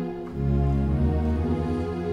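Electronic keyboard playing a held chord, with a deep bass note coming in about a third of a second in and sustained underneath. It is the heavier voicing with an added low bass note, which the player plays as the way not to do it.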